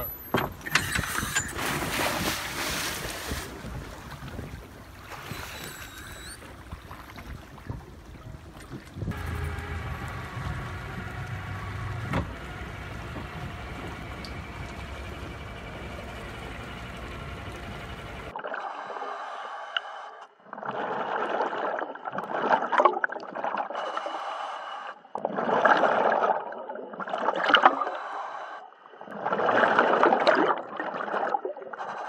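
A boat motor idling at the surface. About two-thirds of the way in the sound turns muffled and underwater: a scuba diver breathing through a regulator, with exhaled bubbles gurgling in bursts every second or two.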